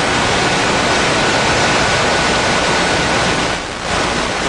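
Loud, steady hiss like static, with a faint thin high tone running through it and a brief dip near the end.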